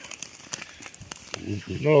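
Scattered light clicks and scrapes of loose field stones being shifted by hand, a few irregular knocks spread over the first second and a half.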